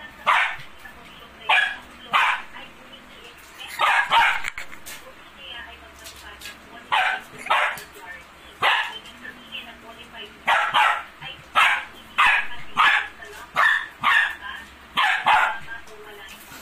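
A dog giving a long series of short, sharp play barks in irregular groups of one to three, while roughhousing with a kitten.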